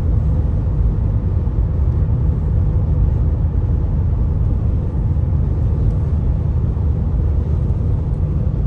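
Steady low road rumble inside a car's cabin while driving at highway speed.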